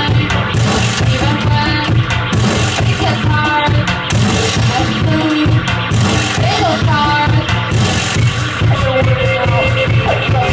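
Live band playing a loud, steady synth-punk dance song on drum kit, electric guitar and synthesizer, with a constant driving beat and gliding synth lines.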